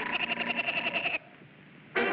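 Woody Woodpecker's cartoon laugh ending in a rapid, trilling run of pulses on one pitch, which stops abruptly about a second in.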